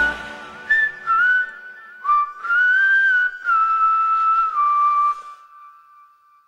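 A person whistling a slow, short melody of held notes that step up and down, alone after the band stops, then fading out near the end.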